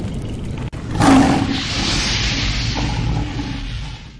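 Animated logo intro sound effect: a steady low rumble, then about a second in a sudden loud rushing burst that carries on and fades near the end.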